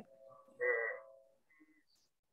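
A person's voice through video-call audio: a brief, quiet, held wordless sound at one steady pitch, like a hesitant 'uhh' while searching for words.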